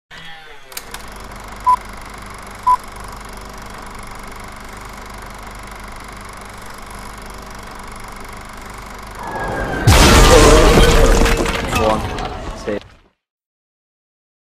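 Action Movie FX boulder-crush sound effect: a rumble builds, then a loud crash with breaking, crumbling debris for about three seconds before it cuts off suddenly.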